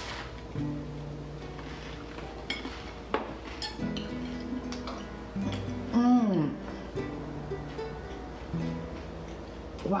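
Background music of gentle plucked-string notes. About six seconds in, a short downward-sliding voice sound, an appreciative 'mmm' while eating, is the loudest thing heard.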